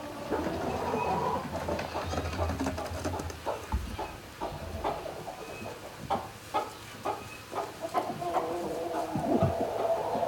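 Chickens in a straw-bedded barn: low clucks near the start and again near the end, with many short clicks and rustles in between.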